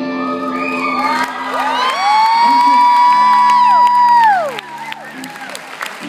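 A live band's final chord ringing out while audience members whoop and cheer, with several long calls that rise, hold and then fall away. The whoops die down about four and a half seconds in.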